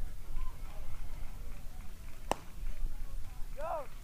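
A single sharp crack of a baseball striking about two and a half seconds in, over steady open-air background noise, followed near the end by a short shout of "Go!".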